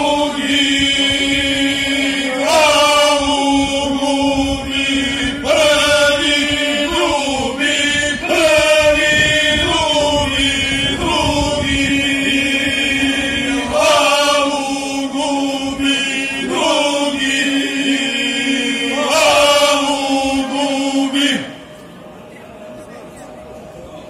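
Male folk singing group singing a traditional Serbian song a cappella: a melodic line in phrases that slide up into each opening note, over a steady low note held by the other voices. The singing stops near the end.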